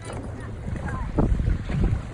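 Wind gusting on the microphone as an uneven low rumble, over the wash of water around a small boat.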